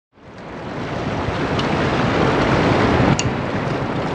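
Steady rush of a large river's rapids mixed with wind on the microphone, fading in over the first second.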